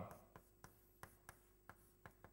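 Chalk writing on a chalkboard: faint taps and scratches as the letters of a word are chalked, a small tick every few tenths of a second over a low steady room hum.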